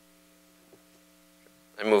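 Faint, steady electrical mains hum of several steady tones, with two tiny clicks. Near the end a man begins speaking.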